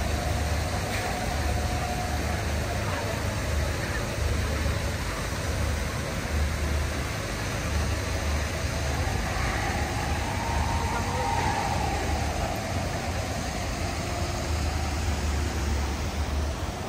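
Steady outdoor ambience: an even rush of noise with a low rumble that comes and goes, and faint background voices.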